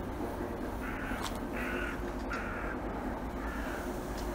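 Crow cawing, four harsh calls in a loose series, each about half a second long.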